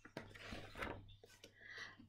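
Faint rustling and small clicks of a paper picture-book page being turned by hand, over a low steady hum.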